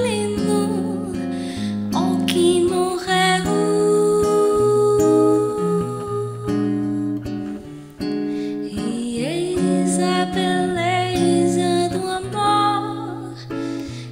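Bossa nova played on a nylon-string guitar, with a woman's voice singing the melody over the chords.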